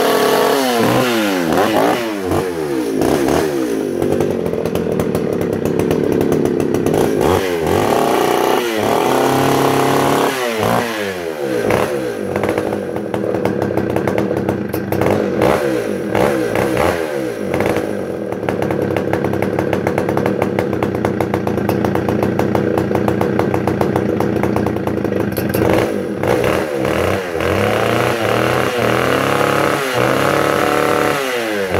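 Homelite VI 955 82cc two-stroke chainsaw running out of the cut, revved up and down in repeated throttle blips, held at a steadier speed through the middle, then blipped again near the end. Its Tillotson carburettor is set slightly rich, so it is running a little rich.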